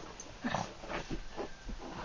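A small dog rolling and squirming on its back on a carpet, making a string of short breathy noises. The loudest comes about half a second in.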